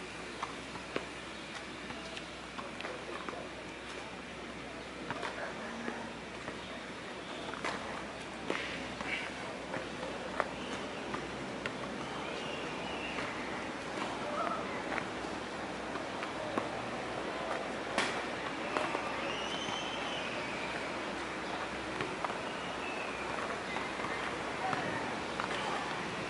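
Steady outdoor background noise with scattered light clicks and taps from a set of push-ups on wooden gymnastic rings and their straps, the sharpest click about eighteen seconds in.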